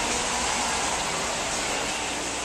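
Steady rushing noise of running aquarium systems: water circulating through the tanks, with the drone of pumps and fans.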